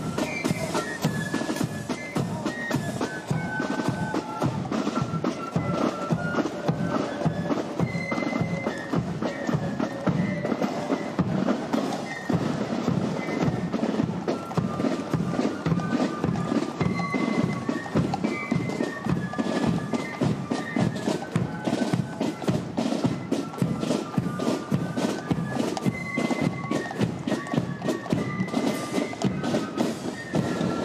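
Military marching band of red-coated Foot Guards playing a march: side drums and bass drum beat a steady rhythm under a high woodwind melody.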